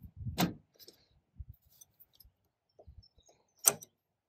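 Pliers clinking on a metal hose clamp on the fuel line: a sharp metallic click about half a second in and a louder one near the end, with faint small knocks between.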